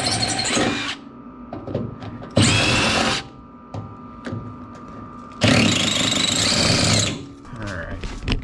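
Milwaukee cordless impact driver run in three bursts, each one to two seconds long, working on rusted door hinge bolts.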